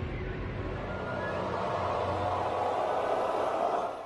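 A rumbling, hissing swell of noise, like an advert's whoosh sound effect, building toward the end and then dropping away.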